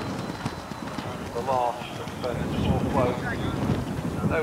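A horse galloping on turf, its hooves thudding irregularly, with wind on the microphone.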